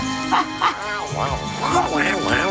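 Short, high, yipping creature calls, several in a row, over background music.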